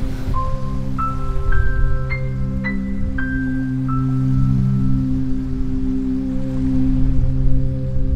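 Background music: a slow run of bell-like struck notes, about two a second, over a held low drone. The notes stop about halfway through while the drone carries on.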